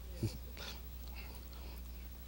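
A man's short low grunt about a quarter second in, followed by a few soft breathy exhales, over a steady low electrical hum.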